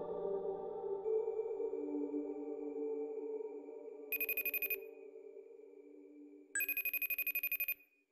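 A phone's electronic ringtone sounding twice as a rapid trill, about four seconds in and again, longer, near the end, over ambient music that fades away.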